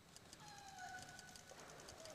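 Near silence: faint arena room tone, with a faint falling tone about halfway through.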